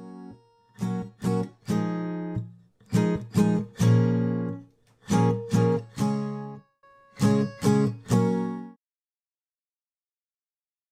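Acoustic guitar strummed by a beginner: four groups of quick down-strummed chords, each group ending on a longer ringing chord, stopping abruptly near the end.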